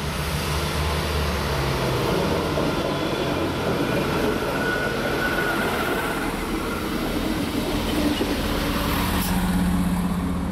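A red regional multiple-unit train running past close by, with a steady rumble of engine and wheels on the rails. Near the end a low steady hum comes in as another train approaches.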